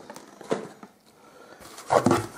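Items being handled in a cardboard parcel: faint rustling and a few short soft knocks, the loudest about half a second in.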